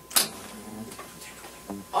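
A short sharp hiss or click just after the start, then faint low talk.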